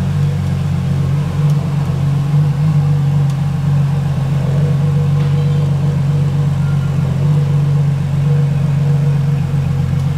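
Ferrari LaFerrari Aperta's 6.3-litre V12 running at a steady low idle, with a deep, even note.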